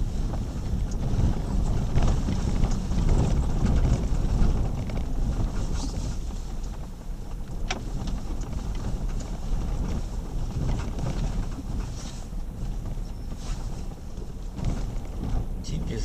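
Jeep Grand Cherokee (WK2) crawling along a rough dirt trail, heard from inside the cabin: a steady low rumble of engine and tyres, with an occasional sharp click or knock as it goes over the bumps.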